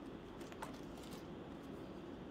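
Quiet room tone with a steady low hum and a few faint, light clicks in the first second or so.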